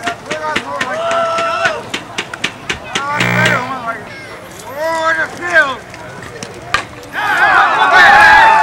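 Players and spectators shouting and calling out over one another, with scattered sharp clicks among the voices. Near the end several voices grow louder together.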